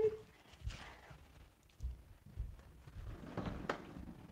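A few faint, scattered low thumps and rustles, with a sharper short knock about three and a half seconds in: handling and movement noise while the streaming setup is being moved and settled.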